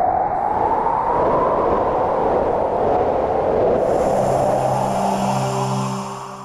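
TV channel ident sound design: a long rushing whoosh that swells and falls, joined about four seconds in by a held chord with a high shimmer, starting to fade near the end.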